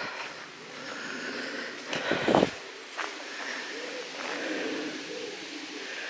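Birds singing in woodland over a steady outdoor background, with a brief louder sound about two seconds in.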